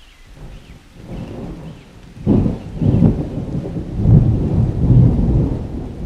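Rolling thunder: a low rumble that builds, breaks loud a little over two seconds in and swells several more times before easing off near the end.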